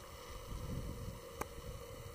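Quiet, uneven low rumble of wind and handling noise on a camera's built-in microphone, with a faint steady hum and a single sharp click about one and a half seconds in.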